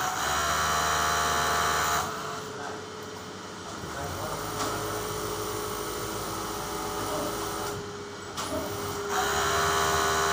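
Industrial overlock (serger) sewing machine running in bursts: about two seconds of fast whirring stitching at the start and another burst near the end, with a quieter steady hum in between.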